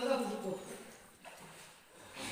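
A person's voice calling out in a drawn-out, held tone that trails off about half a second in, followed by faint background noise.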